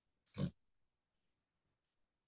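One brief, noisy vocal sound from a man close to his microphone, a breath-like grunt lasting about a quarter of a second, a little under half a second in.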